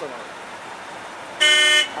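A car horn gives one short, steady honk about a second and a half in, over faint street noise.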